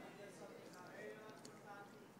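Near silence: room tone with faint, distant voices.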